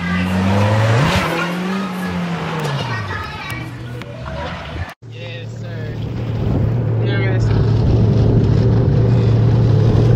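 A vehicle engine whose pitch rises and then falls over a couple of seconds, with voices over it. After a sudden cut, a jet ski engine runs steadily and grows louder.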